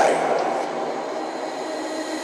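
Electronic dance track in a breakdown: the drum beat drops out and a sustained synth chord holds steady with no percussion.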